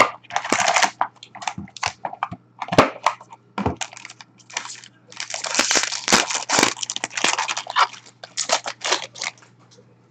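Plastic wrapping being torn and crinkled off a small cardboard box of hockey cards, in irregular bursts that are densest a few seconds in, with sharp clicks and a few knocks of the box against a glass counter.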